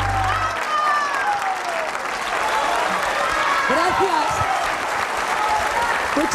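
Studio audience applauding, with voices heard over the clapping; the music's last low bass note stops about half a second in.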